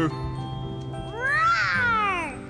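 A single meow-like cry that rises and then falls in pitch over about a second, near the end, over soft background music.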